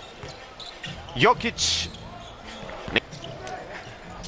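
Basketball game sound on a court: a ball bouncing amid low arena noise, with a short shout about a second in and a brief hiss just after it.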